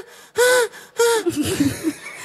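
A woman's voice through a microphone making two short, breathy exclamations, each rising and falling in pitch.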